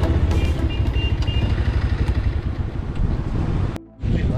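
Car engine and road noise from inside the car as it pulls in to park: a steady low rumble that cuts off suddenly near the end.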